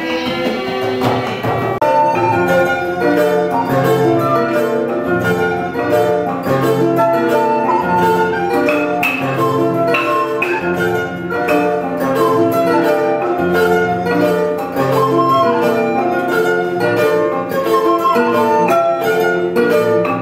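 West African ensemble music led by a balafon, a wooden xylophone, playing rapid repeated melody notes over a low bass line. A steady percussion beat comes in about two seconds in.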